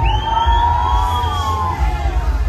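Loud fairground ride music from the ride's sound system, with heavy bass and a long siren-like tone that glides up at the start, holds, then bends up and down again near the end.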